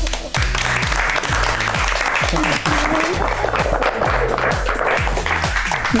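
A group of people clapping, starting just after the start, over background music with a steady beat.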